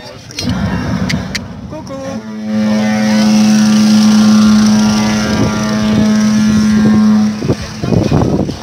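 A long, loud horn blast on one steady low note, starting about two seconds in and lasting about five seconds before cutting off, over crowd voices.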